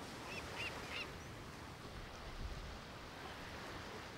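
Faint beach ambience, a low even hiss of surf, with three short high bird chirps in the first second.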